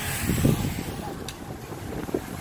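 Wind buffeting the phone's microphone, a rumbling hiss of gusts that eases off in the second half.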